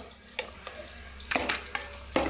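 Chopped onions and green chillies frying in oil in a steel pan, a steady sizzle broken by a few sharp scrapes or knocks as they are stirred.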